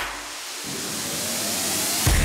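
A soundtrack riser: a rushing hiss that swells steadily louder over about two seconds, with a faint rising tone under it, building into the next beat of the music.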